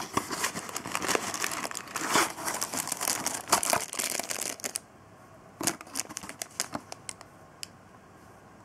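A small cardboard box opened by hand and a figure in a clear plastic bag pulled out, the cardboard and plastic rustling and crinkling for about five seconds. After that, a few short clicks as the bagged figure is handled.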